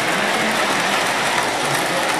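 An O-gauge model train, a Williams Pennsylvania Trainmaster diesel locomotive pulling freight cars, running along the layout track: a steady rolling noise of motors and wheels on the rails.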